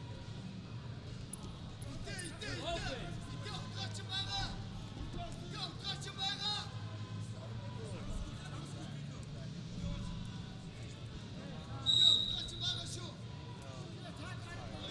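Wrestling arena background of crowd noise and shouted voices, broken about twelve seconds in by one short, shrill blast of a referee's whistle, the loudest sound. The whistle stops the bout to call a caution.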